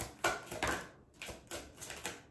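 Tarot cards being shuffled in the hands: a quick, uneven run of soft papery snaps, a few each second, with a brief pause about a second in.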